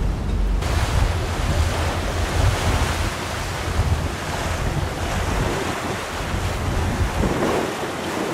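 Wind buffeting the microphone on a moving ferry's open deck: a steady rushing hiss with a low, gusty rumble, mixed with the wash of choppy sea. The hiss comes in abruptly about half a second in.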